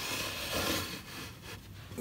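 Loose pine boards of a homemade stair platform rubbing and scraping against each other as they are pushed into position by hand. The scrape swells about half a second in, then eases off.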